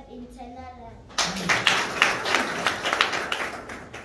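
A group of people clapping, starting about a second in, running for a few seconds and fading near the end; children's voices are heard briefly before it.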